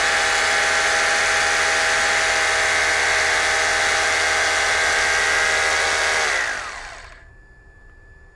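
A 650-watt electric drill running free at steady full speed with a loud, even whine. About six seconds in it is switched off and its pitch falls as it spins down.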